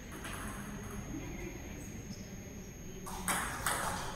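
Celluloid-type table tennis ball being struck by rubber-faced bats and bouncing on the table at the start of a rally: a few quick, sharp clicks from about three seconds in, after a steady quiet background.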